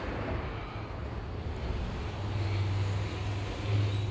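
Steady background noise: a rushing hiss with a low hum underneath that grows a little more prominent about halfway through.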